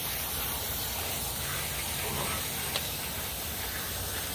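Water spraying steadily from a garden-hose spray wand onto a wet puppy's coat and a wooden deck, a constant hiss.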